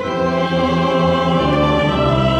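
Choir and orchestra performing a mass setting. The choir sings held chords over the strings and low instruments, which come in at the start and are sustained.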